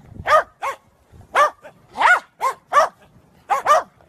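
Small dogs barking: about eight short, high-pitched barks, some in quick pairs, with brief gaps between them.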